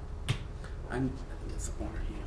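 A single sharp click near the start, then a brief faint vocal sound about a second in, over a steady low room hum.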